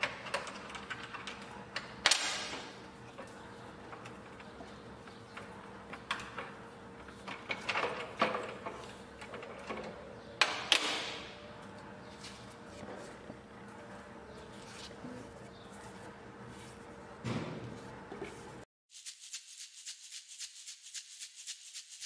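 Handling noises from a homemade sanding disc being worked off a table saw's arbor and lifted out through the table slot: scattered clicks, knocks and scrapes of metal and wood, the sharpest about two seconds in. Near the end the handling sounds stop and quiet music begins.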